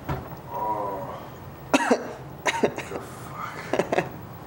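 A man coughing and groaning in pain from a gunshot wound: a drawn-out groan, then short, sharp coughs and gasps, the loudest a little under two seconds in.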